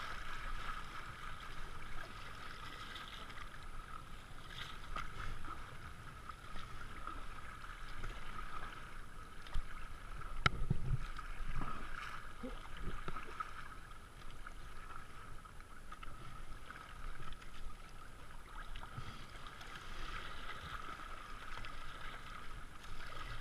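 A kayak paddled down a river: steady rush and splash of water around the hull and paddle blades. One sharp knock about halfway through.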